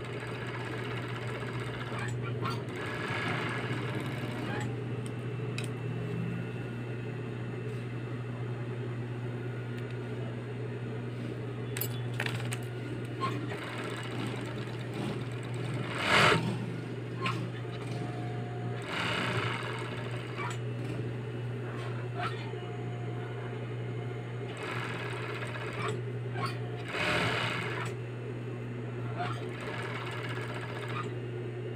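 Industrial overlock sewing machine running: a steady low motor hum under repeated bursts of fast stitching as fabric is fed through, with one sharper, louder burst about halfway.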